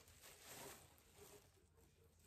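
Near silence, with faint rustling of a knit cardigan being handled.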